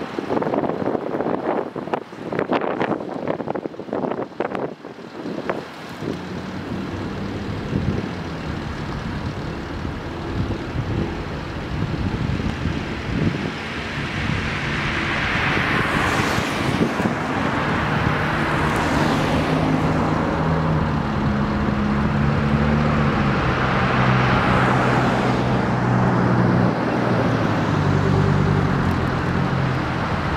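Cars and SUVs driving past one after another, the tyre noise swelling as each goes by, with a growing engine hum toward the end as another SUV approaches. Wind gusts on the microphone in the first few seconds.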